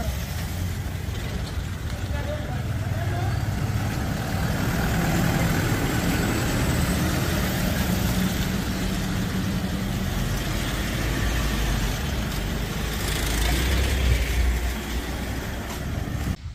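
SUV engines running as vehicles move slowly past close by, with people's voices in the background.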